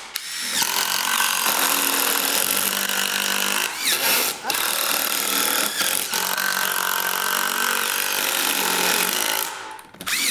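Two Dewalt impact drivers, a 20V DCF787 and a 12V DCF801, hammering away at once as they drive screws into a wooden beam, with short breaks between screws. Both stop briefly near the end.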